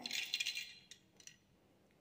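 Metal tripod stand clinking and rattling on the hook of a spring balance as it is hung on, with two light clicks about a second in.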